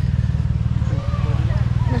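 A steady low rumble runs throughout, with faint voices in the background.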